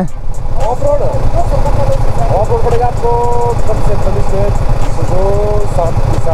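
Vehicle engines idling side by side, a steady low rumble, with a man's voice talking faintly over it.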